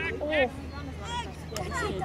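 Voices of spectators and players calling out and talking, several at once, many of them high-pitched. A short sharp click cuts through about one and a half seconds in.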